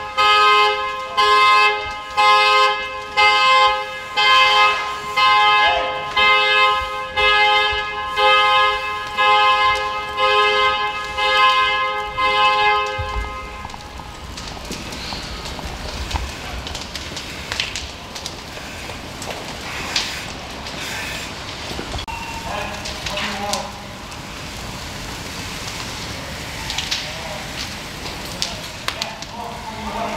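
A car horn honking over and over, about once a second, in a steady pattern typical of a car alarm, stopping about 13 seconds in. After that, the vehicle fire crackles with scattered sharp pops and a low rumble.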